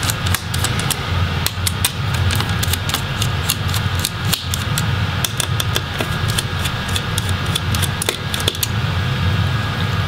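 Hand screwdriver turning out a laptop's heat sink screws: frequent small metallic clicks and ticks of the bit on the screw heads, over a steady low hum.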